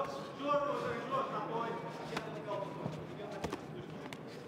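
Background voices calling out, quieter than the commentary, with a few sharp knocks about two seconds in and again about three and a half seconds in: strikes landing as one MMA fighter works ground-and-pound from the top position.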